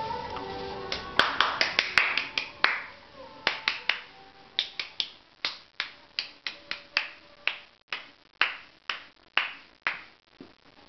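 A long, irregular run of sharp snaps, fastest and loudest between about one and three seconds in, then about two to three a second.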